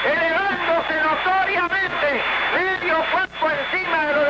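A man's Spanish radio sports commentary, talking continuously: speech only.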